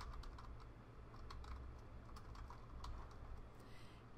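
Computer keyboard typing: a run of faint, irregular keystroke clicks over a low steady hum.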